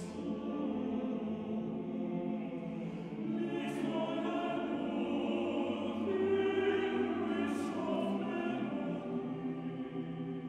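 Male choir singing a slow, sustained passage in several parts, with a few sibilant consonants and a swell in volume about six seconds in.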